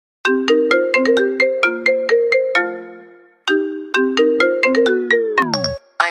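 A marimba-style phone ringtone melody of quick mallet-like notes plays a phrase and fades away, then starts again. About a second before the end its pitch slides steeply down and it cuts off.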